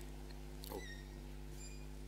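Steady low electrical hum from a sound system, with two brief, faint high squeaks, one under a second in and one near the end.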